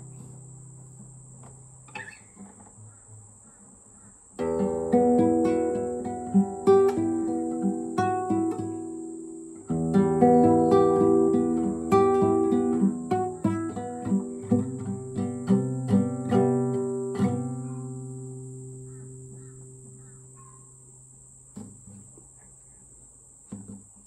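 Classical nylon-string guitar played fingerstyle: a chord rings out, then after a quiet moment two passages of plucked notes and chords start about four and ten seconds in, the second ending in a chord left to fade away, with a few soft notes near the end.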